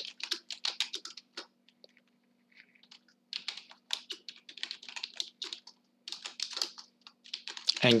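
Typing on a computer keyboard: a quick run of key clicks, a pause of about two seconds, then steady fast typing until near the end.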